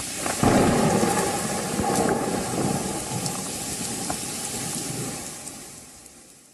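Heavy rain pouring onto a flooded street, with a low rumble that swells about half a second in and slowly dies away, the sound dropping off near the end.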